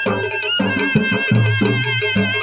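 Live Chitrali dhol music: drums beating a fast, steady rhythm under a sustained high melody line that is held and then rises in pitch about half a second in.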